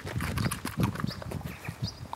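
Polish Lowland Sheepdog crunching and chewing a raw carrot close to the microphone, in irregular crunches.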